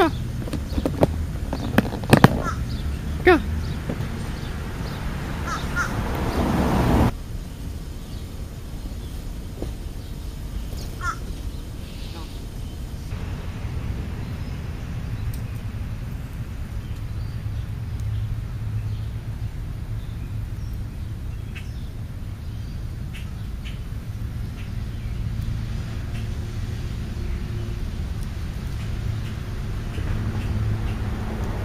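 Crows cawing several times in the first few seconds. About seven seconds in, a rushing noise swells and stops suddenly, and then a steady low rumble continues.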